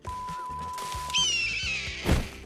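An eagle screeches a little past halfway in, a shrill high cry falling slightly in pitch, over film score music. A steady high tone sounds through the first half.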